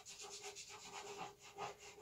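Chalk pastel stick scratching across textured pastel paper in quick, short, repeated strokes, about five a second, faint.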